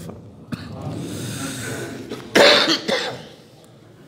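A cough: one loud short cough a little past halfway, with a smaller one just after.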